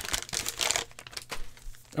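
Plastic trading-card cello-pack wrapper and foil packs crinkling as they are handled and pulled apart. The crinkle is strongest in the first second, then thins to a few faint rustles and clicks.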